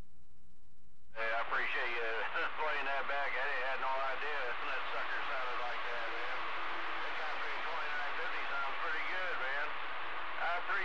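CB radio receiver: a steady hum, then about a second in it opens up to loud static with garbled, unintelligible voices of distant stations talking over one another.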